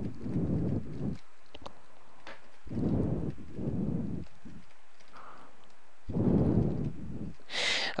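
A person's breathing close to the microphone: three slow breaths about three seconds apart, with a few faint clicks between them.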